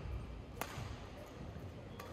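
Faint sounds of a badminton singles rally in a hall, with one sharp hit of racket on shuttlecock a little over half a second in.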